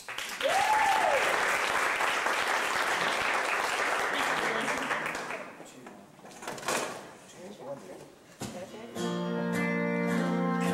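Audience applause with one rising-and-falling whistle at the start, dying away after about five seconds into a few scattered claps. Near the end the band starts the song: acoustic guitar and long, held pedal steel guitar notes.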